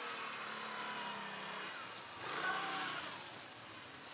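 Can-Am Outlander 800 ATV's V-twin engine running at a distance, its revs rising about two seconds in as it pushes through deep snow toward the camera.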